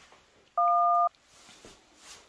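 A single telephone keypad tone: two steady pitches sounding together for about half a second, a little after the start.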